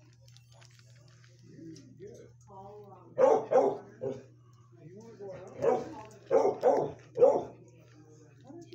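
A dog barking: about seven loud barks in two quick runs, with softer yips just before.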